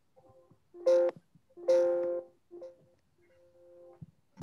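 A pair of steady electronic tones sounding together, like a telephone signal, in four separate stretches. The first two, about a second and about 1.7 s in, start sharply and are loud. The last two, near the end, are faint.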